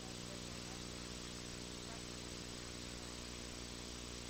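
Steady electrical mains hum, a low buzz with many evenly spaced overtones, over a constant hiss on an open audio line.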